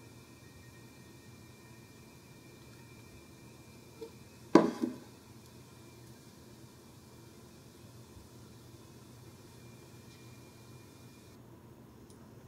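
Faint steady whir of a gaming laptop's cooling fans blowing out the rear exhaust under benchmark load, with a thin high tone over it. A single sharp knock about four and a half seconds in, just after a small tick.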